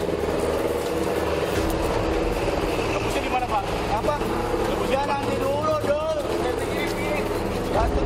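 Motorcycle engine idling steadily, with men's voices talking and calling out in the middle.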